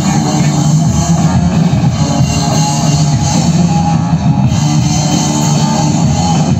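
Loud rock music with guitar and drums, playing steadily.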